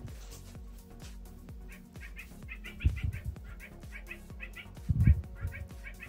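Electronic children's toy playing a tune of short, repeated chirping beeps by itself, with nobody playing with it. Two heavy thumps cut in, about three and five seconds in.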